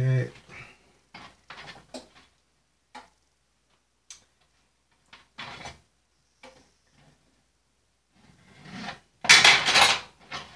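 Light taps and clinks of hands and a utensil working on a baking sheet, scattered through the quiet, with a louder, longer clatter about nine seconds in.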